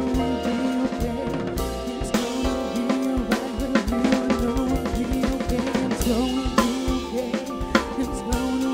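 Live jazz band playing, the drum kit busy and prominent with snare, bass drum and cymbal hits over sustained chords and a wavering melody line.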